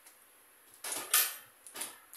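Small metal tool parts handled: a drill bit being fitted into a steel DeWalt DT7603 bit holder, with a short metallic scrape and click about a second in and a lighter click near the end.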